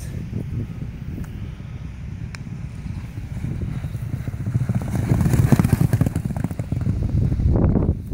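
Hoofbeats of two racehorses galloping on a sand training track, growing louder as they approach and loudest about five to six seconds in as they pass close by.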